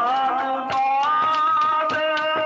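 A man sings one long held note that slides up in pitch about a second in, over sustained harmonium, with a few tabla strokes.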